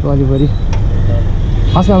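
Steady low rumble of a car engine running, heard from inside the cabin with the window down, with one sharp click about three quarters of a second in. A man's voice talks briefly at the start and again near the end.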